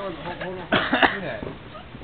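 Indistinct talk, broken about a second in by a short, harsh burst of breath.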